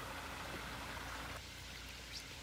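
Water running over the rocks of a small garden-pond waterfall, a steady trickling rush that grows a little quieter about one and a half seconds in.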